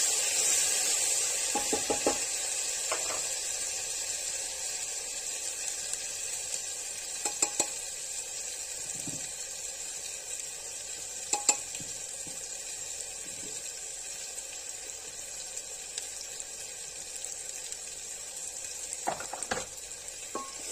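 Onions and spices frying in hot oil in a pressure cooker: a steady sizzle that slowly dies down, with a few light taps of a utensil against the pot, the sharpest about halfway through.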